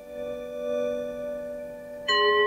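A meditation app's chime ringing with several bell-like overtones, swelling slightly and then fading. It is the app's short feedback cue that the meditator's mind has started to wander.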